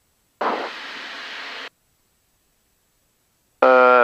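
A burst of static-like hiss over an aircraft headset audio feed, about a second long and cut off sharply, with dead silence around it where the intercom squelch is closed.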